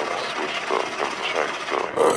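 Spoken vocal ad-libs from a rap track's intro, with a rough, noisy texture and no beat or bass underneath.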